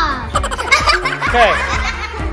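Children laughing over background music.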